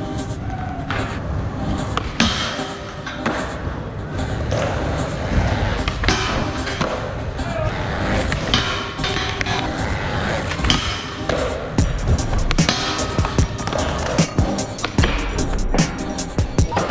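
Skateboard wheels rolling on smooth concrete, with repeated sharp clacks of boards and trucks hitting and sliding on a steel transformer flat bar rail, under background music.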